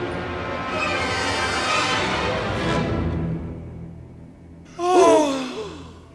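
Orchestral music with pitches sweeping downward, fading away by about four seconds in. About five seconds in comes a short, loud, breathy vocal exclamation falling in pitch, like a gasp or sigh.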